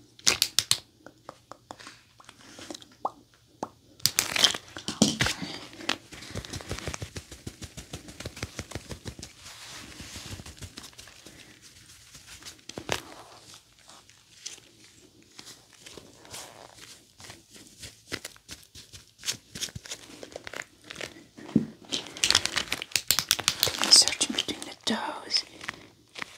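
Gloved hands rubbing, scratching and crinkling over a bare foot and ankle: a dense run of small crackles and clicks, loudest in bursts about four seconds in and again near the end.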